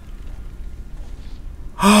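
Faint low background hum, then near the end a man's loud, drawn-out shocked "oh" at one steady pitch.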